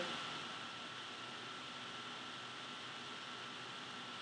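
Steady, faint background hiss of room tone with a thin, high, steady whine; nothing else happens.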